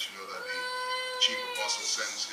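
A high voice wailing in long drawn-out notes that bend slightly in pitch, one held for about a second.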